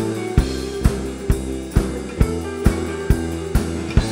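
Rock music with a steady drum beat, about two hits a second, over held bass notes and chords.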